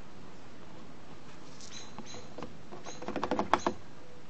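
Small plastic bottle of two-stroke oil draining upside down into a plastic gas can, glugging as air bubbles back into it: faint at first, then a quick run of gurgles and clicks in the last second or so.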